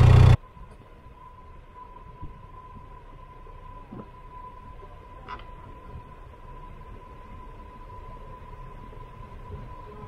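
An idling boat engine cuts off abruptly in the first half-second, leaving a quiet outdoor background with a thin, steady high tone and two faint brief sounds in the middle.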